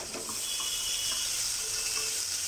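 Food sizzling in hot oil in an open pressure cooker, a steady hiss, as it is stirred with a spoon.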